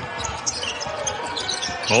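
Basketball bouncing on a hardwood court during live play, heard as the game sound of a TV broadcast with a few short thuds and no crowd noise.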